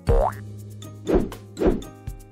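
Cartoon-style 'boing' sound effect rising sharply in pitch at the start, followed by two more short loud hits about a second and a second and a half in, over background music with a steady bass note.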